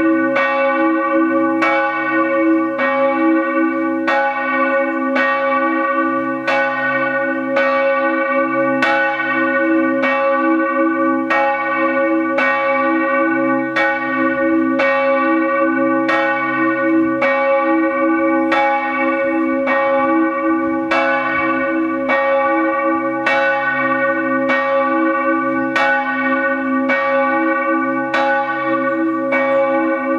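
A single large church bell, bell 1 of the tower, swinging alone for the pre-ringing. Its clapper strikes in an even rhythm, each stroke ringing on under the next.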